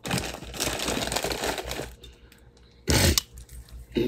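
Crinkling and rustling handled close to the phone's microphone for about two seconds, then a short, loud rustle or bump about three seconds in.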